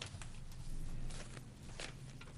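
Paper rustling and small handling knocks at a table picked up by the desk microphones, louder around the middle, over a steady low hum.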